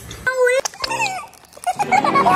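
A child's brief high-pitched vocal sounds, two short ones in the first second, with a couple of sharp clicks between them.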